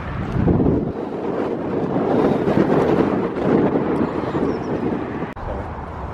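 Wind rumbling on the camera microphone, rising and falling in gusts, with a brief dip just over five seconds in.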